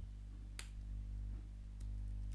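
A single sharp computer keyboard key click about half a second in, with a few fainter clicks near the end, over a steady low electrical hum.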